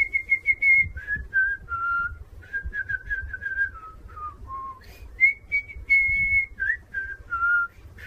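A person whistling a tune: a string of short and held notes moving up and down, starting with a few quick repeated high notes.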